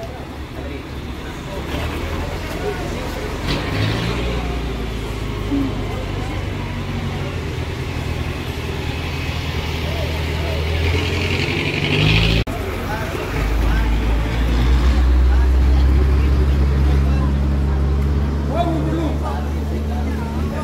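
Street traffic: motor vehicle engines running with a steady low rumble, and voices in the background. There is a short break about twelve seconds in, and after it the rumble is louder.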